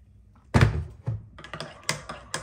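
A loud thump of an item being put down on a hard surface about half a second in, then a softer knock and a few light clicks and taps of items being handled.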